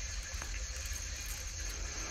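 Faint, steady background hiss and low hum of a recorded phone line during a pause in the conversation, with a couple of faint clicks.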